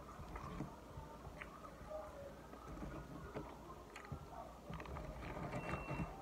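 A person chewing a mouthful of cheeseburger and fries close to the microphone: faint, scattered small wet mouth clicks.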